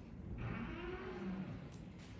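A passing motor vehicle, its engine sound swelling and falling away over about a second, over a low steady hum.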